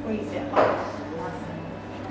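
Coffee shop ambience: background chatter from customers, with one sharp knock about half a second in over a low steady hum.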